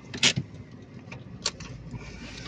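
A few short clicks and rustles in a car cabin over a quiet steady background: two close together near the start and one about three quarters of the way through.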